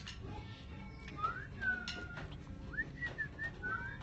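A person whistling a short, loose tune: rising slides and a few held and clipped notes, starting about a second in, over low room noise.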